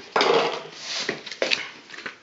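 Paper leaflets and box packaging rustling and scraping as they are pulled out by hand, with a few short sharp clicks about a second in.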